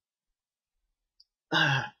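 Silence, then about one and a half seconds in a man briefly clears his throat.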